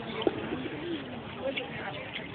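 Distant voices of people talking, with a sharp brief sound about a quarter second in and then a low drawn-out call that rises and falls during the first second.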